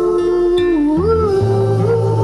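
Song passage without lyrics: a wordless hummed vocal line holds a note, dips, then slides up about a second in, over a bass line and guitar.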